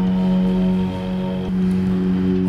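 Background music drone: one low note held steady with even overtones, sustained between the chanted lines of the mantra.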